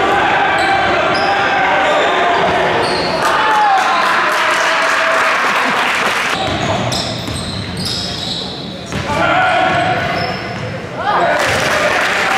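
A basketball being dribbled on a hardwood gym floor during game play, with short high sneaker squeaks and players and spectators calling out, echoing around a large gym.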